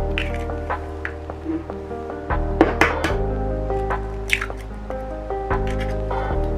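Background music of held tones. Over it, an egg is cracked and its contents dropped into a well of flour in a glass mixing bowl, heard as a few short sharp clicks and wet drops.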